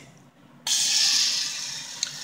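A dandelion flower head frying in hot oil in a stainless steel pan: a sizzle that starts suddenly about two thirds of a second in and slowly fades.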